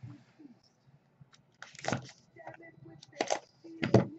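Small cardboard card box handled and slid across a desk mat: a few short scuffs and rustles, the loudest about two seconds and about three and a quarter seconds in, with soft ticks between.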